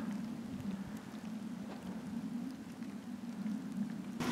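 Faint outdoor ambience: a steady low hum under a light hiss, with a few faint ticks.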